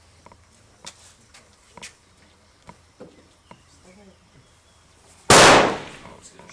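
A single loud rifle shot on the firing line a little over five seconds in, its report dying away over about half a second. Several faint sharp ticks come before it.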